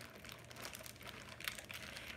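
Plastic bag crinkling faintly in irregular crackles as hands work at it, trying to get it open.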